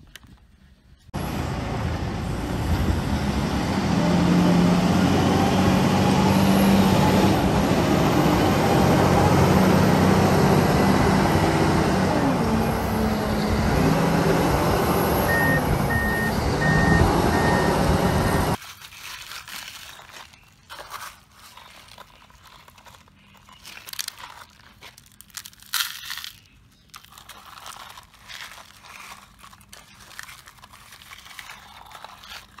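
Komatsu WA480 wheel loader's diesel engine running and revving under load, starting suddenly about a second in, with a backup alarm beeping four times near its end. It cuts off abruptly, leaving small gravel stones crunching and clicking as plastic toy trucks are pushed through them.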